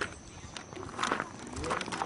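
Footsteps on a paved path: a few soft steps in the middle, with a faint voice near the end.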